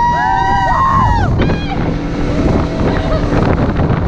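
Motorboat running fast across open water, its engine and hull noise mixed with heavy wind buffeting on the microphone. Girls aboard let out high-pitched squeals in the first second or so, and more calls follow around the middle.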